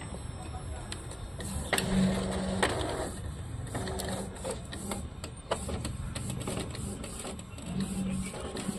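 Epson L5190 inkjet printer mechanism running: short runs of motor whirring with clicks in between as the printhead carriage moves.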